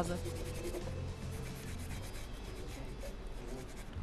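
Cloth rubbing over bare wooden letters, working in a bitumen wax stain to age the wood: a soft, continuous scrubbing over a low steady hum.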